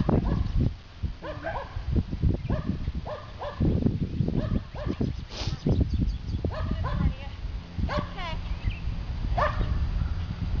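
Short, pitched barks repeated in quick groups over the low thuds of a horse's hooves trotting on arena sand.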